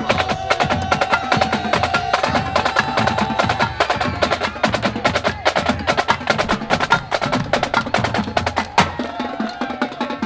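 A drum circle playing fast, dense percussion, with a held high tone sounding over it for the first few seconds; the drumming thins out near the end.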